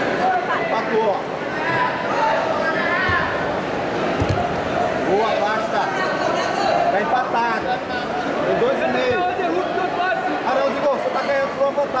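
Overlapping voices of spectators and coaches echoing in a large hall, a steady crowd chatter, with a low thump about four seconds in.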